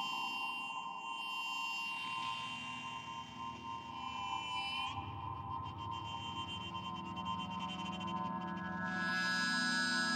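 Slow drone music of sustained, layered guitar tones with no beat. About five seconds in a deep low tone comes in, and near the end a brighter, fuller layer swells in.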